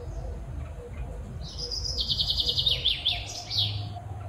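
A songbird singing a high chirping phrase that starts about a second and a half in: a held note, then a fast trill, then several quick sweeping notes.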